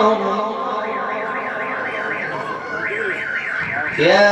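A high warbling tone that sweeps up and down about four times a second, in two runs with a short break between them, like an alarm.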